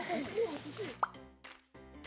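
A single short rising 'pop' sound effect about a second in, followed by light background music with held notes.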